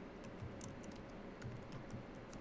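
Typing on a computer keyboard: a run of irregular key clicks, a few of them heavier thumps.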